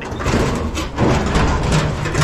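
Sheet-metal scrap, a gas grill and appliance, being shifted and dragged around in a trailer: continuous scraping and rattling with many small knocks.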